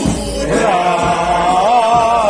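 Male voices singing Byzantine chant, a wavering melody over a steady held low drone (ison); the singing breaks off briefly at the start and resumes about half a second in.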